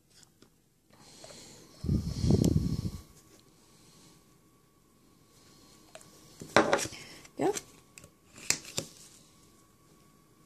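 Hand work on a nail-art stamping set: a rough scraping noise about two seconds in, then a few short, sharp scrapes and clicks of the plastic scraper card, metal stamping plate and stamper being worked.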